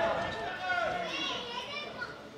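Several people shouting and calling out over one another at a football match, with raised voices overlapping.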